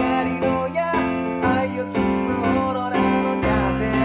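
Kawai piano playing sustained chords with a moving bass line, and a singing voice over it. The bass shifts to a new note about three and a half seconds in.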